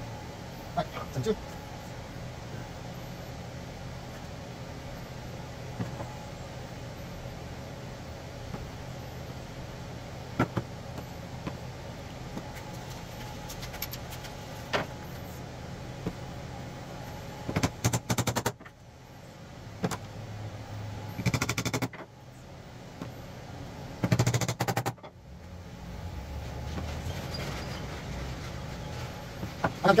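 Wooden parts of a hall tree being fitted together with glue and dowels: a few scattered knocks, then three short bursts of quick wood-on-wood knocking and clattering in the second half, over a steady low hum.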